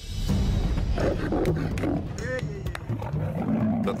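Dramatic music starts suddenly and loudly with a heavy low drone, and lions snarling and roaring over it.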